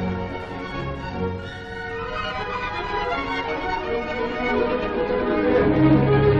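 Orchestral film score led by strings, with sustained bowed notes that swell in volume toward the end.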